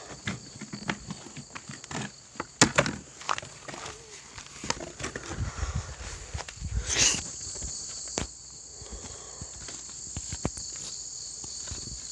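Insects keep up a steady high-pitched drone. Over it come footsteps on grass and scattered knocks and rustles from a phone being carried and handled, with the sharpest knock about two and a half seconds in and a rustle about seven seconds in.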